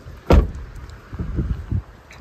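A car door, a Chevrolet Impala's, shut with one loud thud about a third of a second in. A few softer low thumps follow as footsteps cross the paving.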